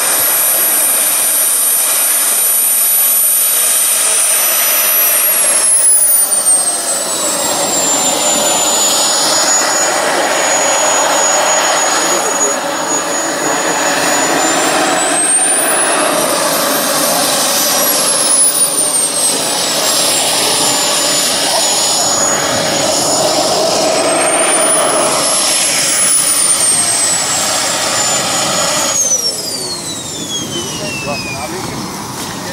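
Kingtech K140 model jet turbine in an F1 Fortune RC jet running as it taxis, a high whine over a rushing jet noise. The whine drops in pitch about six seconds in, swells up and back down twice, and falls steeply near the end as the turbine winds down.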